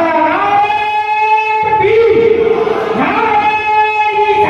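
A man chanting into a microphone through a PA system, holding long sung notes of about a second each, each one sliding into its pitch.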